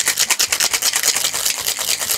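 Ice and liquid rattling inside a Boston shaker (metal tin and mixing glass) being shaken hard, a rapid, even rhythm of hits.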